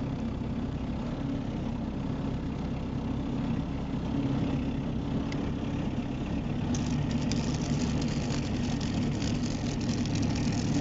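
Car engine running at low speed, heard from inside the cabin as a steady low hum while it drives over a rough grass track. From about seven seconds in, a dense crackling joins it, as dry tall grass brushes against the car's body.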